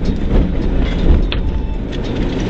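Inside the cabin of a rally car driven hard on a dirt road: a loud, steady mix of engine, tyres on gravel and rattling of the body and suspension, with a sharp knock about a second in as the car hits a bump.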